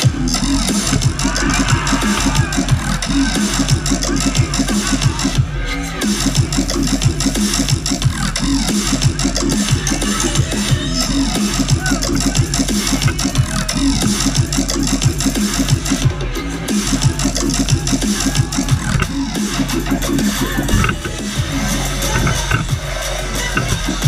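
Loud electronic bass music (dubstep) from a DJ set, played over a festival sound system and heard from within the crowd: a dense, driving beat of heavy bass hits, with brief breaks about five seconds in and again around sixteen seconds.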